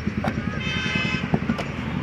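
A horn sounds once for about half a second, midway, over a steady low rumble, with a few short knocks.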